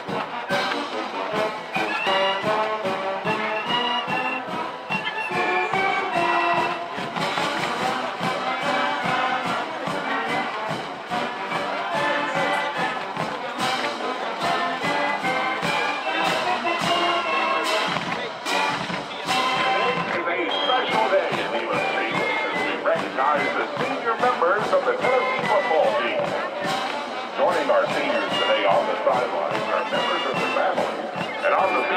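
College marching band playing on the field: brass and saxophones carrying the tune over regular drum hits.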